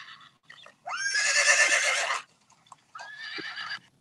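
Recorded horse whinnying, played back from an animal-sounds video: one long neigh that rises at its start about a second in, then a shorter, fainter one about three seconds in.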